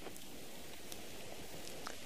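Faint wet rustling of hands rubbing together with crushed soap bush leaves and water, working up a lather, with a few small ticks.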